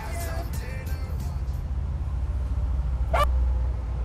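Reggae-dancehall music ending after about a second and a half, leaving a steady low rumble like street traffic. A short, sharp sound comes about three seconds in.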